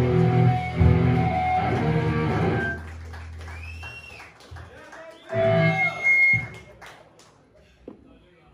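Live rock band with electric guitar, bass and drums playing loud, then stopping about three seconds in with a low note ringing on for about a second. After that come quieter voices and shouts, with some guitar sounds.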